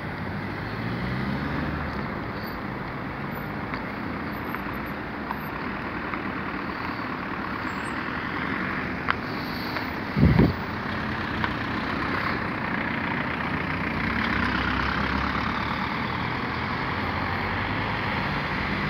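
Road traffic: cars passing and idling along a highway, a steady wash of engine and tyre noise. About halfway through there is a brief loud low rumble.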